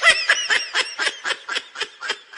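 Laughter in short, even bursts, about four a second, gradually fading away.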